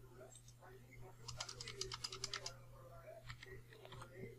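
Faint computer keyboard typing: a quick run of about ten keystrokes about a second in, then a few single key presses near the end, as a short name is typed.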